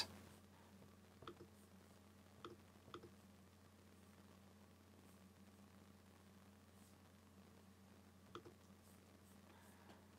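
Near silence with four faint computer-mouse clicks, the first three within the first few seconds and the last near the end.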